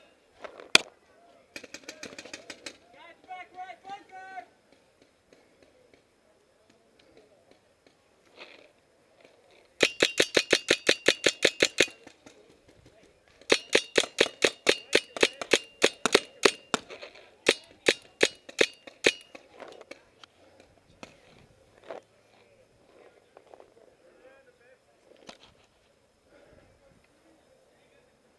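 Paintball marker firing in rapid strings of sharp pops, about ten shots a second, with two long loud bursts in the middle and a few shorter strings and single shots around them. Faint distant shouting comes in between.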